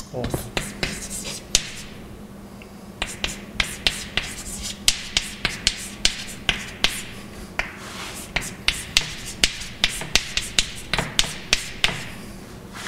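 Chalk writing on a blackboard: a quick run of sharp chalk taps and short scratching strokes as an equation is written, with a pause of about a second shortly after the start.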